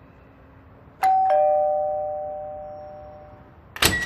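Two-tone ding-dong doorbell chime: a higher note, then a lower one a moment later, both ringing out and fading over about two seconds. A sharp clack comes near the end.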